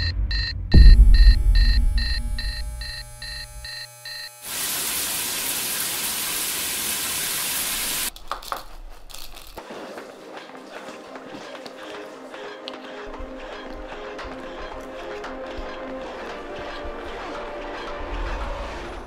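An alarm clock ringing in rapid, evenly spaced pulses for the first four seconds, with a loud deep boom about a second in. A steady hiss follows for a few seconds, then soft background music.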